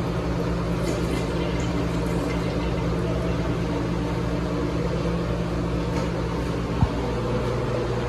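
2000s American Standard Cadet toilet flushing: a steady rush of water swirling down the bowl and refilling, with one sharp click about seven seconds in.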